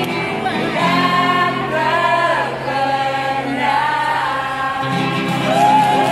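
Live street-band music: a violin plays a melody of held notes with sliding pitch changes over acoustic guitar and bass accompaniment.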